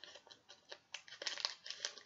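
Small clicks and crinkling rustles of hands handling a just-opened trading-card pack, its wrapper and cards, getting busier about halfway through.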